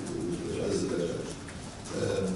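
A man's voice making a drawn-out hesitation sound, a low wordless hum, between phrases; it fades out about a second in.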